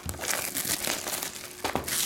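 Plastic shrink-wrap crinkling as it is peeled off a box of trading cards, with a few sharper crackles near the end.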